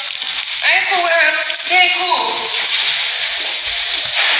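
A high voice in a few short phrases over a steady hiss; the hiss carries on alone for the last second or two.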